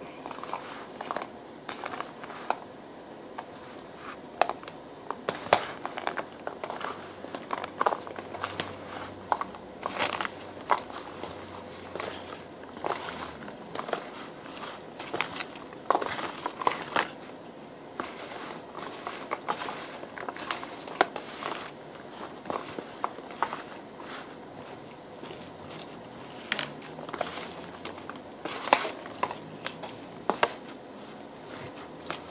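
Hands squeezing and mixing milk-soaked bread in a disposable aluminium foil pan: irregular crackles, squishes and taps, a few every second, as the food is worked and the foil flexes.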